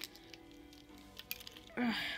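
A few scattered plastic clicks from a cheap floppy cube (1x3x3 puzzle) being turned by hand, one that turns stiffly and gets stuck.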